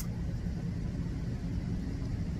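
Steady low background rumble, like distant traffic, with a single sharp click at the very start.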